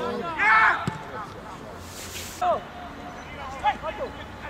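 Voices shouting during football play, with a loud shout about half a second in and further calls later on. A single sharp knock of a football being struck comes about a second in.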